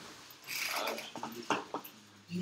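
A brief rustle, then a few quick small clicks about a second in, the kind made by handling a computer keyboard or mouse.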